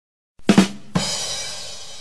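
A short drum sting on a drum kit: a drum hit about half a second in, then a second hit with a cymbal crash that rings on, slowly fading.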